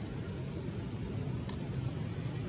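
Steady low outdoor background rumble, with one short high-pitched chirp about one and a half seconds in.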